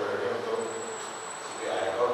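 A man talking into a microphone over a PA in a hall, with a thin, steady high-pitched whine coming in about half a second in and stopping at the end.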